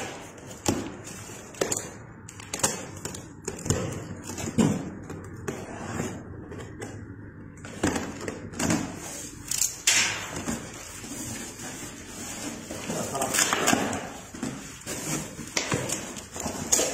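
A cardboard box being opened: a utility knife slitting the packing tape, then the cardboard flaps being pulled open, with irregular knocks, scrapes and rustles of cardboard and tape.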